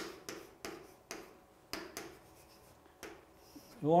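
Chalk writing on a chalkboard: a series of short taps and scratches, about seven strokes, as a character is written.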